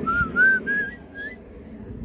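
A man whistling a short run of about six quick notes that step mostly upward in pitch, stopping about a second and a half in.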